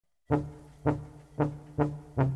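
Klezmer brass band starting up with short, accented low brass notes, about two a second, in a funky freylekhs groove; the first comes a quarter second in, after a moment of silence.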